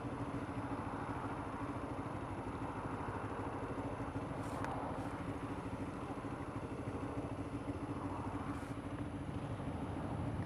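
Motorcycle engines idling steadily at a standstill, an even low hum that stays level throughout.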